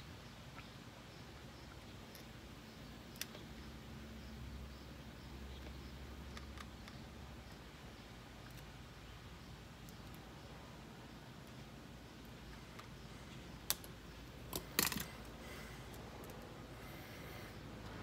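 Faint handling noise from hands working plastic parts and wiring on an RC car chassis: a few sharp, isolated clicks, with a short cluster of them near the end, over low room noise.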